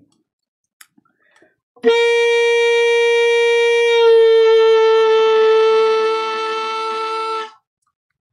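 Alto saxophone holding a single upper-octave G, which about two seconds after it starts sags roughly a half step toward G-flat as the embouchure is loosened: a deliberate drop. The note comes in about two seconds in, grows softer in its last second or so, and stops shortly before the end.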